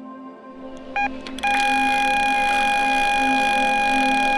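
Electronic carp bite alarm: one short beep about a second in, then a continuous high tone held steady, the sound of a fish taking line on a run.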